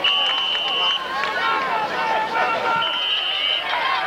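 Football crowd voices shouting and cheering together, with two steady high tones of about a second each, one at the start and one about three seconds in.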